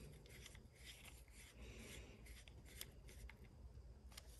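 Near silence with a few faint clicks and rubs from a small screwdriver turning screws back into a folding knife's handle.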